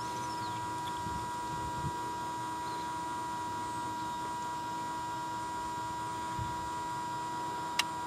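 Steady electrical hum with a high, even tone from the heating system's control box. Just before the end comes a single click as the cycling timer changes over to the next of six valves, set to switch every 10 seconds.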